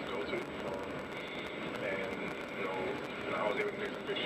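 A sports radio broadcast, thin and cut off in the highs: a man talking in an interview clip, over a steady low road hum.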